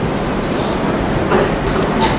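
Steady rumbling background noise in a hall, with a couple of faint knocks near the end.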